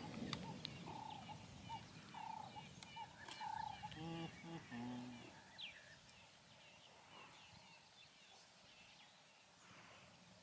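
Meerkat pups making short high peeping and chirping calls while feeding, faint and repeated through the first half, then fading away after about six seconds.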